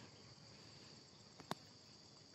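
Near silence: a faint, steady, high insect chorus from crickets or similar insects, with a single short click about one and a half seconds in.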